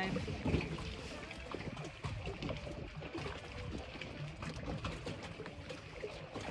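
Small waves lapping against a floating dock and the hull of a moored boat: a steady wash of water with many small splashes and knocks, over a low rumble.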